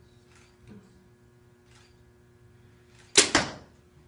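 A compound bow shot a little past three seconds in: a single sudden, loud snap as the string is released and the arrow flies, fading within about half a second.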